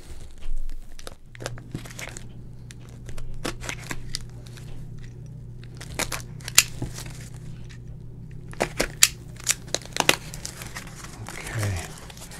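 Utility knife cutting through packing tape and cardboard on a small box, with tape tearing, crinkling and a run of sharp clicks and scrapes as the box is worked open. A steady low hum runs underneath from about a second in until just before the end.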